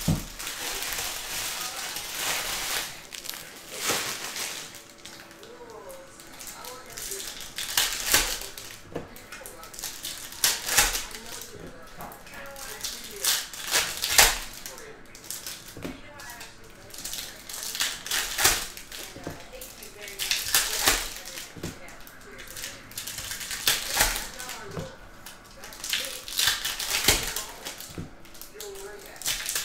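Chromium trading cards handled one after another: cards slid off a stack, flipped and set down, giving a run of irregular swishes and light clicks.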